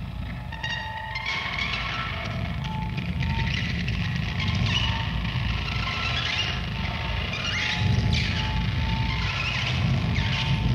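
Loud rock music from a four-piece band: distorted electric guitar and bass over a heavy, sustained low end. About a second in, a thick layer of guitar noise comes in and the sound grows a little louder.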